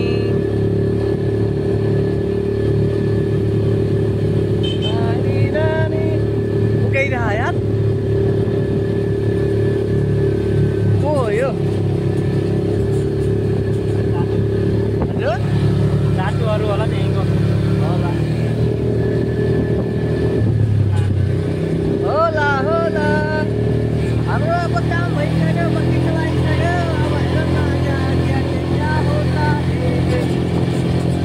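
Quad bike (ATV) engine running at a steady pace while riding, a constant drone with a small dip in pitch about two-thirds of the way through. Voices call out over the engine several times.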